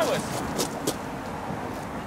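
A word of speech cuts off at the start, then steady outdoor background noise. A few short sharp clicks come about halfway through.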